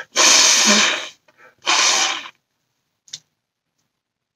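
A man blowing his nose hard into a cloth handkerchief, twice: a long blow of about a second, then a shorter one, with a brief small sound near the end.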